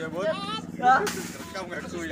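Men's voices talking in an outdoor crowd, with a short sudden hiss about halfway through.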